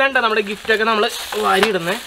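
A man's voice talking, with a hissing rustle of the cloth sack and foil-wrapped gifts being handled from about halfway through.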